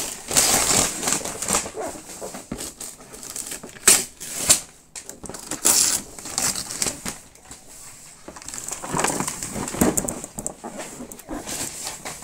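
Wrapping paper rustling and crinkling in irregular bursts as a cardboard toy box is pulled out and handled, with a few sharp knocks of the box.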